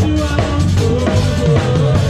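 Live band playing, with the drum kit to the fore: snare, rimshots and bass drum driving the beat under keyboard.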